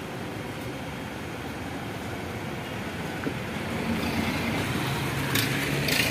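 Street traffic: a steady roadside rumble of passing vehicles, with a vehicle engine's low drone growing louder from about four seconds in.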